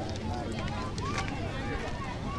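Indistinct chatter of several people talking at once in an outdoor crowd, with no clear words, over a steady low rumble.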